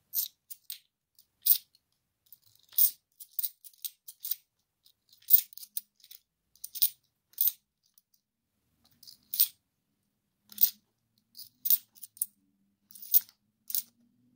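UK 50p coins clinking against each other in the hand as they are slid off a stack one at a time: sharp, bright metallic clicks, irregularly spaced, up to a couple a second with short pauses between.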